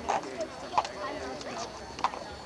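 Several sharp knocks at uneven spacing, the strongest a little under a second in, over low chatter of voices.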